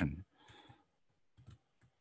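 A spoken word ends, then a few faint computer-keyboard clicks as text is typed, two close together about a second and a half in and one more soon after.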